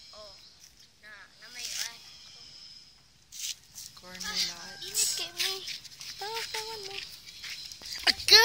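Children talking quietly in short phrases, with brief pauses and a moment of silence about three seconds in.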